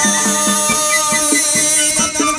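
Live chầu văn ritual music in an instrumental passage: a run of short plucked notes over sustained tones, with percussion.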